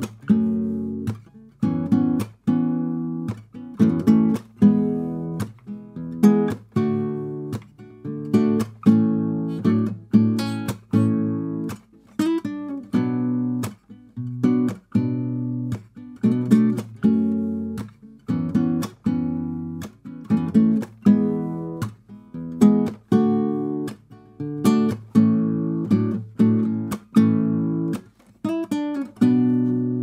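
Nylon-string acoustic guitar played slowly with the fingers through a B minor, F-sharp minor, E, D, A chord progression, a plucked chord or note about twice a second, the last chord left ringing.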